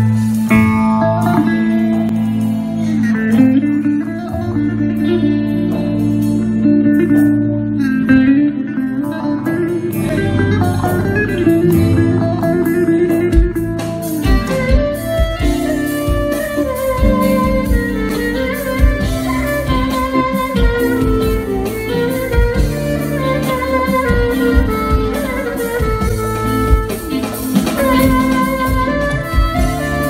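A live band plays an instrumental passage of a Turkish song: electric bağlama and electric guitar over sustained keyboard chords. A steady beat comes in about ten seconds in.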